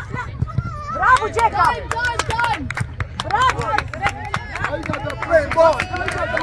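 Sideline crowd at a soccer match: several people talking and calling out over one another, with scattered sharp knocks and claps.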